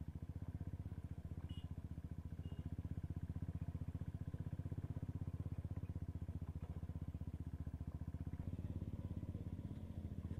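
Motorcycle engine running at low speed on a rough dirt track, its exhaust beating in a steady, rapid, even pulse.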